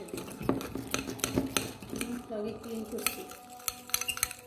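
A spoon stirring thick paste in a ceramic bowl, clinking and scraping against the bowl's sides in repeated irregular clicks.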